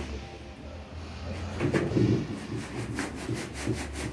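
Granite sand being sieved through a wooden-framed screen, rubbed and shaken back and forth on a concrete floor to break up lumps. It is a quick, rhythmic scraping and rubbing that builds from about a second and a half in.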